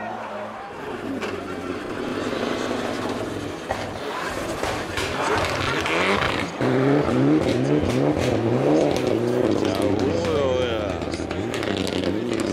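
Mitsubishi Lancer Evolution rally car's turbocharged four-cylinder engine approaching and passing, its revs rising and falling as the driver works the throttle through a slide on snow, loudest about halfway through.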